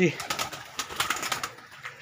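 Pigeons in a brick-and-wire-mesh loft: a quick run of flutters and clatters in the first second and a half, then quieter.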